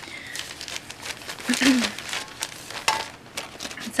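Crinkling and rustling of a shopping bag as hands dig through it for an item, in irregular crackly bursts.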